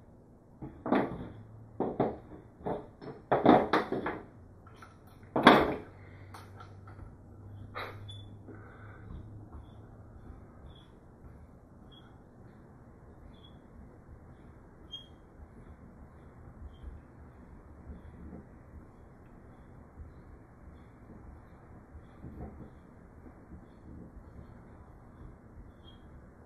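Hex key and metal launcher parts clicking and knocking on a table as a regulator is screwed back into its housing: several sharp clicks in the first few seconds, then a long quiet stretch with faint light ticks about once a second.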